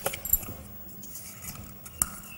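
Light handling sounds: a paper strip rustling with small clicks and a brief metallic jingle of bangles as a hand lowers the paper into a glass.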